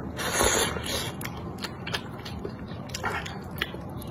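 A person slurping noodles out of soup, a short wet rush of noise about a second long at the start, then chewing them with a string of small wet mouth clicks.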